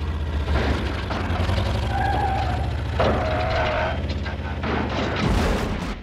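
Cartoon destruction sound effects: a deep, continuous rumble, ending in a loud crash about five seconds in as a car is smashed flat.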